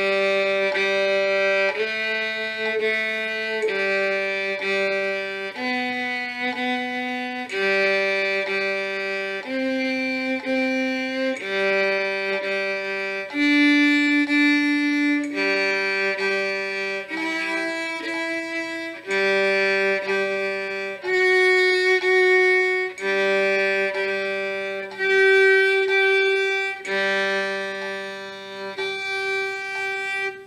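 Solo violin playing the G major scale in intervals: slow, held bowed notes about two seconds each, returning to low G between each step as the upper note climbs A, B, C, D, E, F-sharp and up to the G an octave above.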